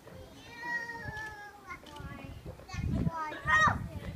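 High-pitched, drawn-out voice sounds without words: one slowly falling tone about half a second in and a short rising one near the end. A low rumble sits on the microphone near the end.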